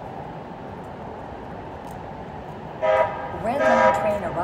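Steady downtown street noise, then near the end a short, loud horn toot followed by a louder wavering tone.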